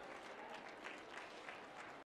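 Faint applause from a rally crowd after a line of the speech, cut off abruptly at the end.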